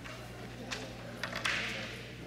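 Ambience of a large hall: a steady low hum under faint distant chatter, with a few sharp clicks about a second apart and a short hiss near the end.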